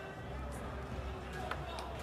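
Quiet basketball-court background: a low steady hum with a few faint, short taps scattered through it.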